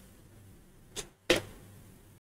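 Two short clicks about a second in, a third of a second apart, the second slightly longer and louder, over faint room tone.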